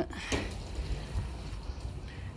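Low rumble of handling noise from a handheld phone camera being moved, with one short hiss about a third of a second in.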